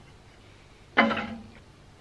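A woman's brief wordless vocal sound, a short 'hm', about a second in, fading out over quiet workshop room tone.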